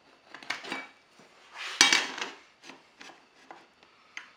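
Metal speed square clattering and scraping against an aluminum composite panel as it is moved into place, with one sharp clack about two seconds in.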